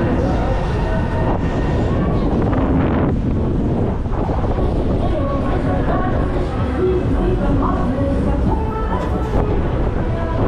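Steady wind rushing on the microphone of an onride camera high on a rotating freefall tower gondola, with faint, wavering voices or fairground sound rising from below.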